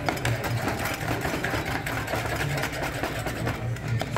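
A metal slotted spoon mashing and stirring guacamole in a stone molcajete, in repeated scraping strokes against the stone.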